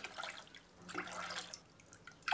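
Water poured from a drinking glass into a stainless steel pot of sugar, in two short pours about a second apart: water being added for sugar syrup.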